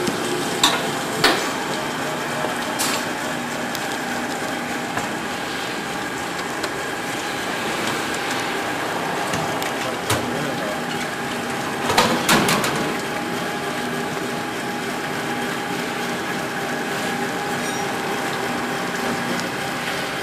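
PS 120 fish filleting machine running with a steady mechanical hum, with a few sharp knocks near the start and a louder clatter about twelve seconds in.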